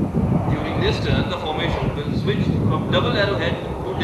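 Steady low rumble of a formation of jet aircraft flying overhead in an aerobatic display, with indistinct voices over it.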